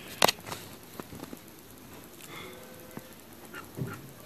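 A few faint clicks and taps of a plastic gel pen being handled and brought to notebook paper.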